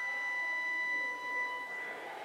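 Pipe organ holding a high chord that is released about three-quarters of the way through, its sound fading away in the room's echo between phrases.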